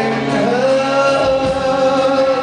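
Live rock band playing, with a singer holding one long note over the drums and band.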